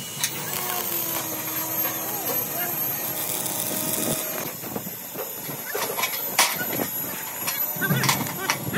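Stick (arc) welding on steel sheet: the arc crackles and sizzles for a stretch of about two seconds as a tack weld is struck. Later come a few sharp metallic knocks.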